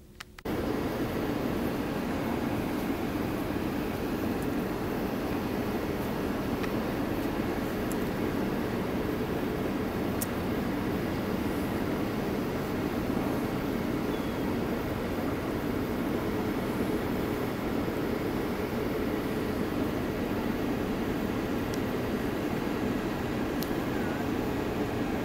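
A steady, even rushing noise on a large ship's upper deck. It starts suddenly about half a second in and holds level throughout, with no clear pitch or rhythm.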